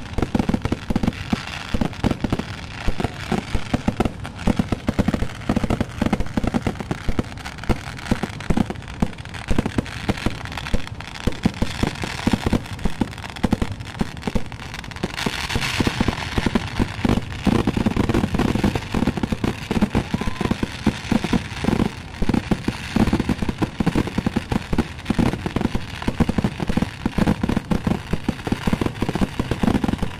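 Kerala temple fireworks (vedikettu) going off in a dense, unbroken barrage: many sharp bangs a second, with crackle and aerial shell bursts, and a brighter crackling stretch about halfway through.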